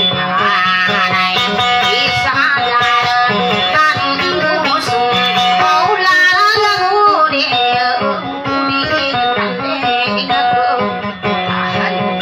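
Kutiyapi (two-stringed boat lute) playing a fast plucked, ornamented melody with bending notes over a steady low drone.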